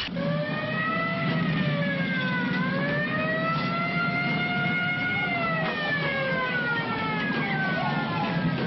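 A wailing siren, its pitch sliding slowly down, then up, then down again, over a steady low hum.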